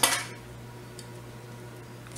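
A single short snip of fly-tying scissors cutting away excess rabbit strip at the start, then a faint click about a second in, over a low steady hum.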